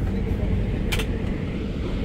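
Steady low rumble inside a train's sleeper coach, with a single sharp click about halfway through.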